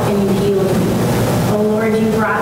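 Only speech: a psalm being read aloud, one continuous voice.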